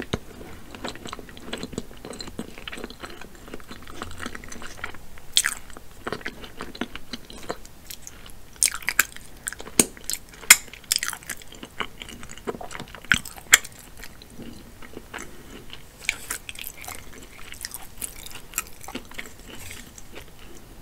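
Close-miked chewing of sauce-coated seafood boil meat, with wet mouth and lip smacks and clicks throughout. A run of sharper, louder smacks comes in the middle.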